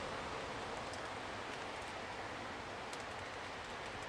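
Steady background noise with no clear source, with a couple of faint short ticks, one about a second in and another near the end.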